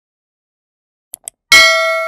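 Two quick clicks about a second in, then a single loud, bright bell ding that rings on: the notification-bell sound effect of a YouTube subscribe end screen.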